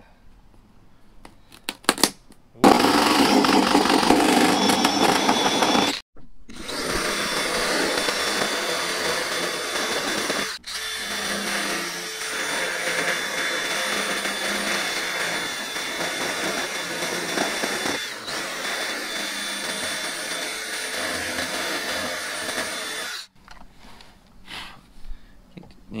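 Cordless drill cutting through a boat's fiberglass gunwale cap, running steadily under load. It stops briefly about six seconds in and dips again near eleven seconds, then cuts out about three seconds before the end, leaving only light handling clicks.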